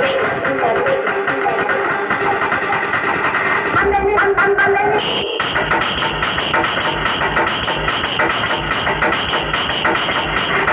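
Loud music from a DJ speaker truck. A melodic passage with held, wavering pitched lines switches about five seconds in to an electronic dance track with a steady low kick beat, about two beats a second.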